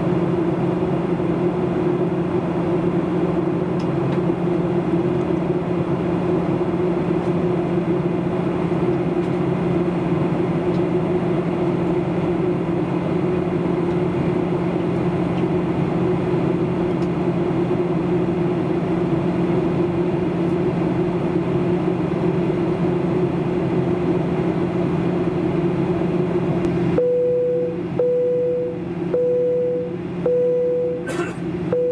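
Steady cabin drone of a Boeing 737-800 in flight: engine and airflow noise with a constant low hum. Near the end the drone drops and a cabin chime sounds repeatedly, about once a second.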